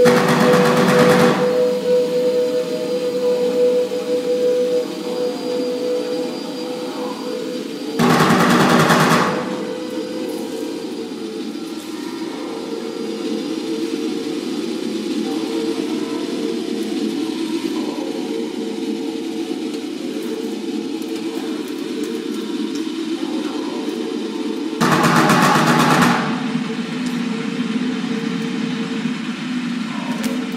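Improvised experimental ensemble music: a steady drone with held tones runs throughout. It is broken three times by short, loud, rattling noise bursts of about a second each: at the start, about 8 seconds in, and about 25 seconds in.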